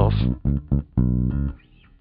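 Recorded electric bass guitar track playing plucked notes with the high-frequency EQ boost switched out, so the strings sound slightly dull. The notes stop in the last half second.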